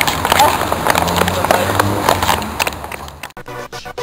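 Handling and walking noise from a handheld camera being carried along: irregular knocks and rustles over outdoor background noise, with faint voices. About three seconds in it cuts suddenly to edited-in music.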